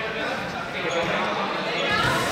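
Several people talking and calling out at once in a reverberant sports hall, mixed with dull thuds of bodies and feet on a gym crash mat and the floor.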